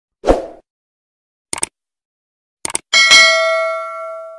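Subscribe-button animation sound effects: a short thump, two quick clicks about a second apart, then a bell ding that rings out and fades over about a second and a half.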